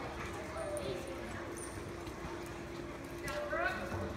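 A horse's hooves clip-clopping over the ground, with a steady low hum behind them.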